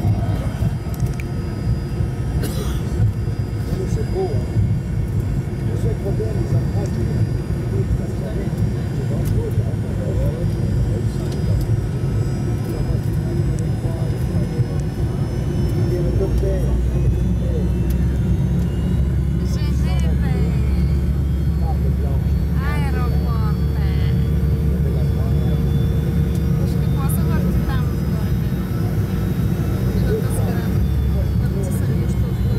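Cabin noise of a Fokker 100 airliner taxiing: a steady low rumble of its jet engines and airframe, with passengers' voices talking in the background. The rumble grows heavier about halfway through, and a steady hum joins it later on.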